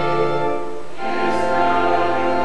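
Church music in held, sustained chords, changing to a new chord about a second in.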